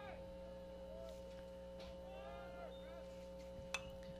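Quiet ballpark ambience: faint distant voices over a steady hum, with a single sharp click near the end.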